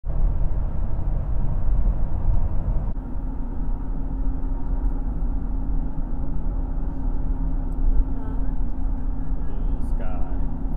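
Steady road and engine rumble heard from inside a moving car's cabin. About three seconds in the sound changes abruptly, and a steady low hum runs on above the rumble from then on.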